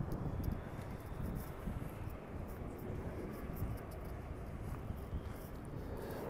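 Quiet outdoor background: a low, steady rumble with faint, scattered ticks.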